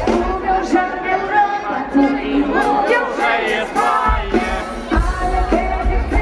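Live amplified pop music from an outdoor concert stage, heard from within the crowd: a woman singing over the band. The deep bass drops out and comes back in about four seconds in.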